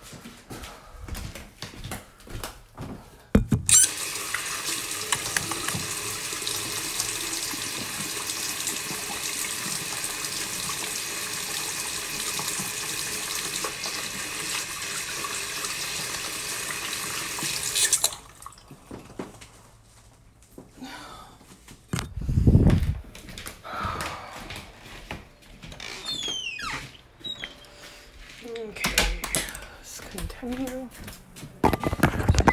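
Water running from a tap into a sink for hand washing: a steady rush that starts sharply a few seconds in, just after a knock, and is shut off abruptly about fourteen seconds later. A heavy low thump follows a few seconds after the water stops.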